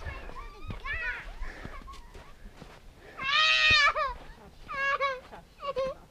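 A young child's high-pitched wavering cry, the loudest part about three seconds in, followed by two shorter whimpers, amid other children's voices.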